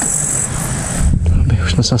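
Steady high-pitched insect chirring with a low hum underneath, which stops about half a second in. Then low wind rumble on the microphone, and a man starts speaking near the end.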